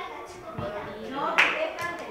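Children's voices talking softly in a room, with two sharp clicks about half a second apart near the end.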